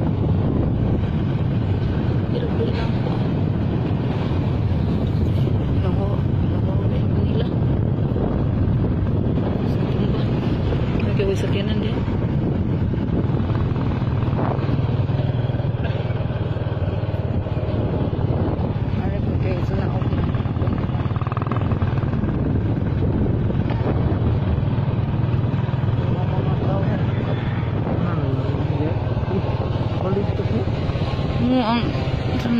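Small motorcycle engine running steadily at cruising speed, with wind rushing over the microphone.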